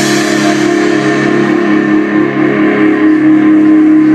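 Live rock band with an amplified electric guitar holding a ringing chord while the cymbals wash out after the last crashes and the drums stop hitting.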